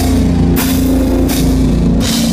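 Live rock band playing loud: electric guitar and bass holding low notes over a drum kit, with two cymbal crashes, about half a second and just over a second in.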